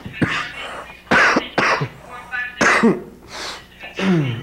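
A man coughing repeatedly into a tissue, about five harsh coughs spread over a few seconds, some voiced. It is portrayed as the persistent cough of a patient with active tuberculosis.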